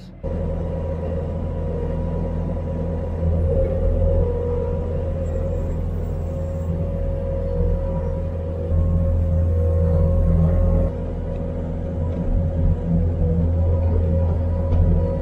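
Skid steer diesel engine running steadily, heard from inside the cab, as the loader pushes bedding and manure. Its level rises about three seconds in and again near nine seconds, then eases off shortly after.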